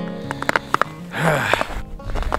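Acoustic guitar music cuts off at the start. Then come a few sharp clicks of handling on the phone's microphone, a short breathy rush, and a low wind rumble on the microphone.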